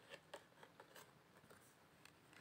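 Faint hand shuffling of a deck of cards: soft card slides and small ticks, several a second.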